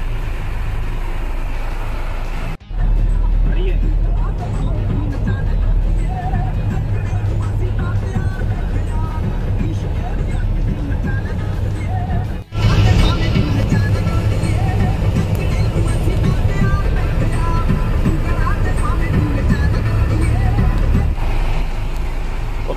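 Background music over the steady low drone of a car driving on the road. The sound drops out suddenly and briefly twice, once early and once about halfway.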